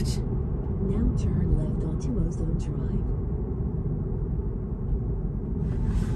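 Steady low road and tyre rumble inside the cabin of a Tesla electric car as it slows down.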